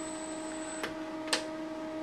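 Aristo-Craft E9 model diesel locomotives running on large-scale track: a steady electric motor and gear whine, with two sharp clicks about a second in and half a second later.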